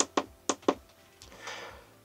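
Four sharp clicks of buttons pressed on the keypad of a Sigma Metalytics Precious Metal Verifier Pro, the first the loudest, all within the first second. About a second and a half in comes a soft, brief scrape as a small item is set down on the tester's sensor.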